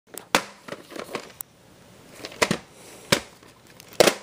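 Handling noise: irregular sharp clicks and knocks with faint rustling between, as a hand-held phone and a VHS tape are picked up and moved. The loudest knocks come about a third of a second in and again around two and a half and three seconds in.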